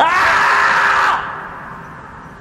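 The scream from the screaming-marmot meme: one loud scream that rises at first and is then held. It breaks off after about a second and trails away.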